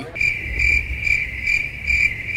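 Crickets chirping, the stock comedy sound effect for an awkward silence: a high, even chirping that pulses about twice a second. It starts abruptly the moment the talking stops.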